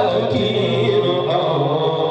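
Voices chanting with music, in long sustained lines.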